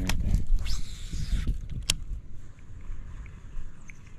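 A cast with a baitcasting reel: the spool hisses briefly as line pays out about a second in, then a single sharp click near two seconds. Wind rumble on the microphone underneath.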